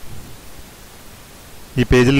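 A steady, faint hiss of background noise fills a pause in spoken narration. A voice starts speaking again near the end.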